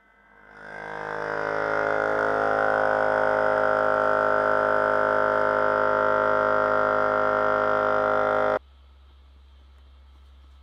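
DIY beer-can free-piston thermoacoustic Stirling engine starting to run: a buzzing drone that swells up over the first two seconds as the piston's oscillation builds, then holds steady. It cuts off abruptly near the end.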